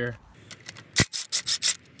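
A sharp metallic click about a second in, then a few quick scraping rubs of metal on metal: parts being handled at the crankshaft nose of a Honda K24 engine as its crank bolt comes off.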